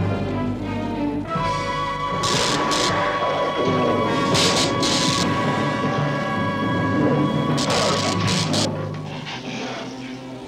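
Dramatic orchestral cartoon score with sharp, noisy energy-rifle blasts cutting through it in three clusters: about two seconds in, around the middle, and again near the end.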